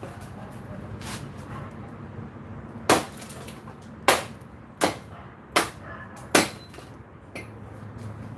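Hatchet chopping firewood into kindling on a concrete floor: a series of sharp chops, the five loudest coming roughly one a second from about three seconds in, with a fainter knock before and after them.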